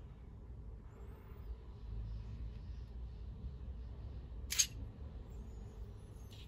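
Quiet handling of a steel digital caliper and a small aluminium-housed resistor, with one sharp metallic click about four and a half seconds in.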